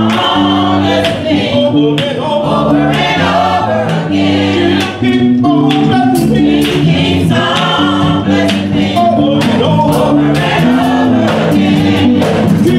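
Gospel choir singing over sustained instrumental chords, with a steady beat of drum hits.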